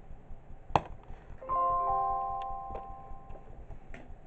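A short chime-like intro jingle playing through a TV: several held bell-like notes come in one after another about a second and a half in and fade out over about two seconds. A single sharp click comes just before it.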